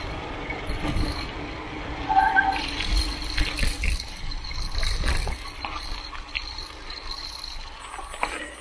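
Mountain bike ridden fast over gravel, grass and a leaf-covered dirt trail: wind buffeting the handlebar microphone, with tyre noise and the bike rattling and knocking over bumps. A short tone sounds about two seconds in.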